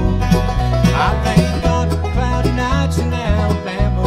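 Live bluegrass band playing: banjo, mandolin and two acoustic guitars, with a low line of bass notes moving under the plucked melody.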